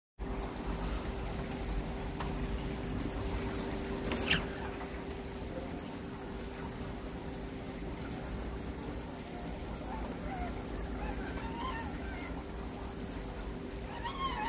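Steady room ambience of an indoor fishing pond: a constant low hum over a wash of noise, with a single sharp click about four seconds in. Faint short chirps or distant voices come in over the last few seconds.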